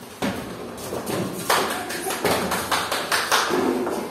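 Small wooden classroom chairs knocking and scraping, with children's footsteps, as a group of young children sit down at their tables: a quick run of irregular taps and thuds.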